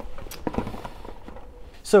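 Small cardboard product boxes being handled and lifted out of a larger cardboard box, giving a few short soft knocks in the first second.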